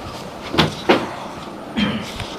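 Pages of a large book being turned and handled: three short paper rustles, about half a second, a second and nearly two seconds in.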